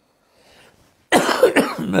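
Near silence, then about a second in a man coughs to clear his throat after a sip from a glass.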